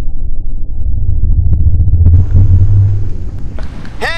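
A loud, low rumble that wavers in strength, muffled at first and opening up into a brighter hiss about two seconds in.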